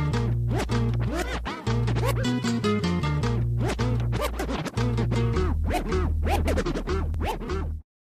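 Background music with a bass line of held low notes, many sharp attacks and quick sliding, scratch-like sounds over it. It cuts off suddenly near the end.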